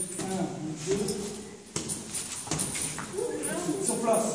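Indistinct voices talking, with two sharp smacks near the middle, less than a second apart: boxing gloves striking focus mitts.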